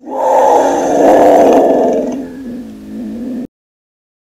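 Monster roar sound effect for an alien creature: one long, loud roar that weakens in its last second or so and cuts off abruptly about three and a half seconds in.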